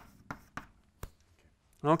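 Chalk writing on a blackboard: a few sharp taps and short scratches in about the first second.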